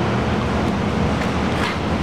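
Steady low background rumble with a faint hum in it, keeping an even level throughout.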